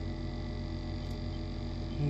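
Egg incubator running: a steady electrical hum, with one faint tick about a second in.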